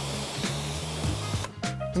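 High-pressure water jet from a Kärcher K4 pressure washer lance spraying onto a car, a steady hiss that cuts off sharply about one and a half seconds in. Background music plays under it.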